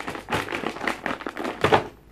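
Hands rummaging among things on a desk: a quick, irregular run of taps, clicks and light knocks, with some rustling.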